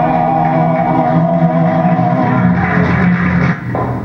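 Older man singing a traditional Serbian village song, holding one long note that fades out about three and a half seconds in, heard through a television's speaker.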